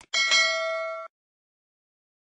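Notification-bell sound effect of a subscribe animation: a small click, then a bright bell ding struck twice in quick succession. It rings for about a second and cuts off suddenly.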